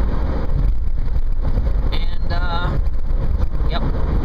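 Steady low road and engine rumble inside a moving car's cabin at highway speed.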